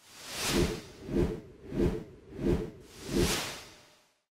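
An edited whoosh sound effect repeated five times, about one every two-thirds of a second. Each swells and fades, with a low pulse underneath, and the last dies away shortly before the end.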